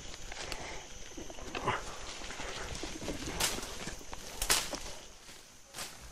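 Footsteps crunching through dry leaf litter on a rainforest floor, with the sharpest crunches about halfway through and near the end, and birds calling in the forest behind.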